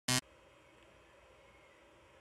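A single short buzzy synth note from a DIY breadboard synth, cut off abruptly after about a tenth of a second, followed by faint room tone.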